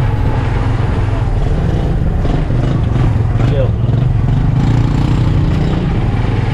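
Motorcycle engine of a sidecar tricycle running steadily under way, a continuous low drone.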